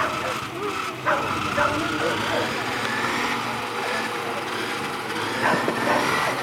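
Dogs barking and yelping excitedly among a murmur of voices while greyhounds run, with a faint steady hum underneath.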